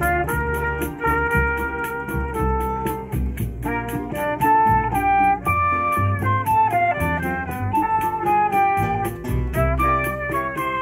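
Choro ensemble playing a tune: flute and trumpet with mandolin and acoustic guitars, over a quick, even rhythm.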